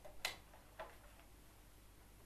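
Two short, sharp clicks about half a second apart, the first the louder, against faint room hum.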